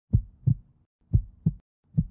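Heartbeat sound effect: pairs of short, low thumps, one pair about every second.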